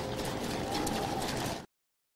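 Steady outdoor crowd and parade-ground ambience with no speech, which cuts off abruptly to dead silence near the end: a dropout in the recording's sound track.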